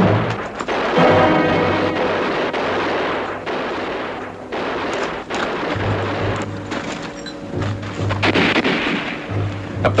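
Repeated gunshots with orchestral music playing underneath.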